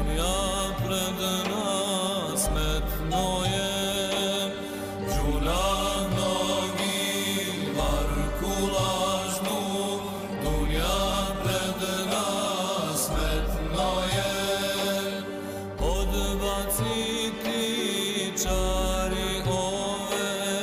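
A choir singing a devotional hymn to the Prophet, the voices gliding between long held notes, over a deep bass note that swells and fades about every two and a half seconds.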